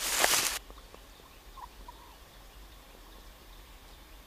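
A loud rustling, crackling noise that cuts off abruptly about half a second in, followed by a few short, soft duck calls.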